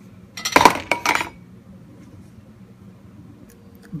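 Kitchenware clattering for about a second, early in the stretch: a cluster of hard knocks and clinks as a pot or container is handled and set down beside a bowl on the counter.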